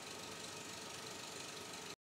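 Steady background hiss with a few faint constant hum tones, unchanging in level, cutting off abruptly right at the end.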